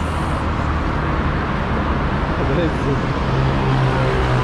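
Steady road traffic noise from a multi-lane highway: a continuous low rumble of cars and vans passing below.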